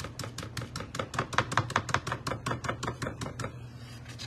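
A stencil brush pounced rapidly through a dot stencil onto a painted board, about seven quick taps a second, stopping shortly before the end.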